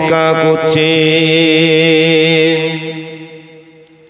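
A man chanting into a microphone, holding one long melodic note with a slight waver in pitch, which fades away over the last second and a half.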